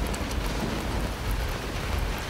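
Heavy rain falling steadily, with a deep low rumble underneath.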